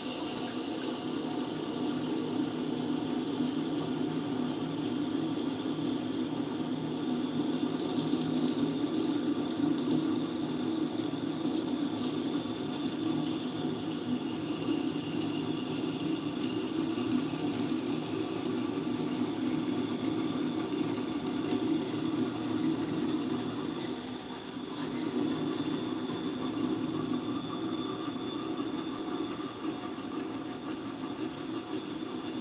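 Tormek T-4 wet sharpening machine running steadily, its water-cooled grindstone grinding a knife's bevel held in a jig, with the motor's hum and the wet hiss of steel on stone. The sound briefly eases about 24 seconds in. This is grinding to raise a burr along the edge before honing.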